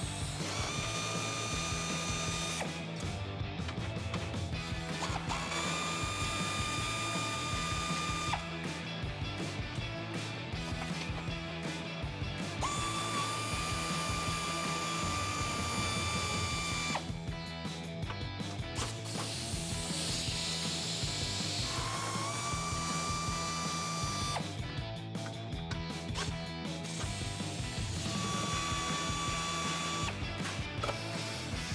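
Pneumatic air ratchet loosening 10-millimeter nuts, running in about five bursts of two to four seconds each with a steady whine.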